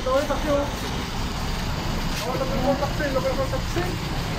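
Street ambience: a steady low traffic rumble with people's voices talking over it.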